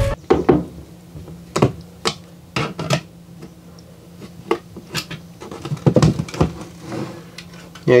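A screwdriver backing out the mounting screws of a solar charge controller and the unit being worked loose from the wall: scattered sharp clicks and light knocks of metal tool on plastic housing, irregular, a dozen or so over several seconds.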